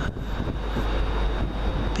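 Wind rumbling on the microphone over a steady low noise of a diesel multiple unit approaching in the distance, a two-unit East Midlands Trains Class 158 set.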